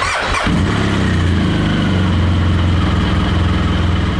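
BMW R1200GS Adventure's liquid-cooled boxer twin being started: the starter cranks briefly, the engine catches about half a second in, then idles steadily. The owner suspects the battery is weak and failing to hold voltage on starting.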